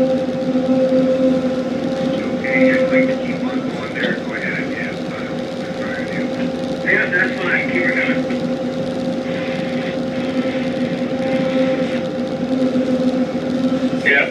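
Tugboat diesel engines running steadily under load while pushing a barge, a constant low hum, with water rushing past the bow.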